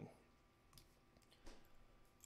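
Near silence broken by a couple of faint clicks of a metal nut driver working a small stack nut on a micro drone's flight controller, the nut still held fast by Welder glue.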